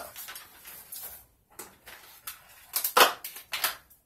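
Handling noises: a sheet of paper rustling as it is put down, with a few short, sharp clatters, the loudest about three seconds in.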